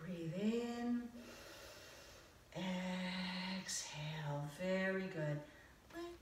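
A woman's voice in long, held, sung-like notes, stepping between a higher and a lower pitch, with a breathy stretch about a second in.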